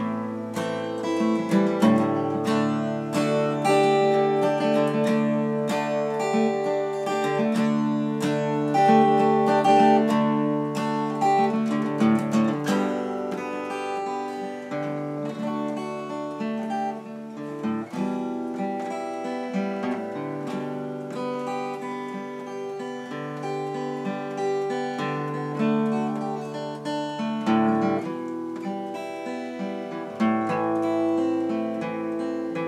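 Acoustic guitar strummed steadily, with a harmonica playing long held notes over it.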